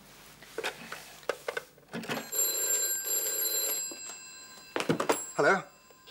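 A telephone bell rings in one burst of under two seconds. Before it come a few knocks and clicks of objects being handled; near the end there are more clicks and a brief voice sound.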